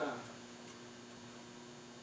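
Steady electrical hum made of two even tones, with the end of a man's spoken word at the very start.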